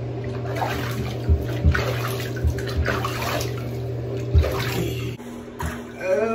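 Water sloshing and splashing in a bathtub as a small wet dog is lathered and scrubbed by hand, with several dull thumps. A steady low hum runs underneath and cuts out shortly before the end.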